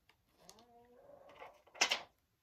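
Plastic film being picked off an eyeshadow palette, ending in a short, sharp crinkle near the end. A faint soft hum sounds just before it.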